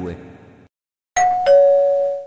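Two-note falling 'ding-dong' chime of a train's onboard public-address system: a higher note sounds about a second in, then a lower note about a third of a second later, held and fading away. It is the attention signal that comes before a station-arrival announcement.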